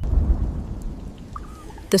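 A thunder rumble with rain falling: the rumble breaks in suddenly at the start and dies away over about a second and a half.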